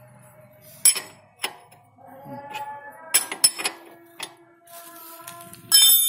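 A 19 mm ring spanner clinking on the rear axle nut of a motorcycle as the nut is loosened: a handful of sharp metallic clinks with pauses between them, the loudest near the end.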